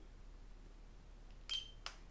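Button presses on a handheld radiofrequency skin-tightening wand as it is switched on: a brief high electronic beep with a click about one and a half seconds in, then a second short click just after.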